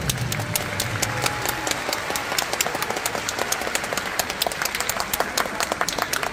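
Audience applauding, with many separate hand claps standing out.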